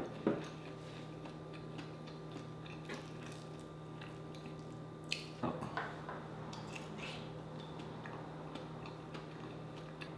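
Close-miked eating sounds of a person chewing seafood-boil food, scattered wet clicks and smacks, with a louder cluster around five to six seconds in as a small boiled potato goes to her mouth. A faint steady hum runs underneath.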